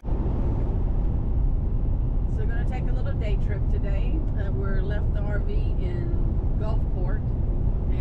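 Steady low road and engine noise heard from inside the cab of a vehicle cruising at highway speed, with no change in speed.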